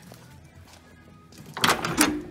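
The door of a 1972 Chevrolet C10 pickup being opened: the latch, a replacement, releases with a loud metallic clunk and rattle about one and a half seconds in. Faint music plays underneath before it.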